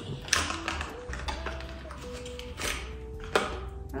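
Clicks and taps of a small contact-lens box and its packaging being opened by hand, the sharpest about a third of a second in and again near the end, over soft background music with held notes.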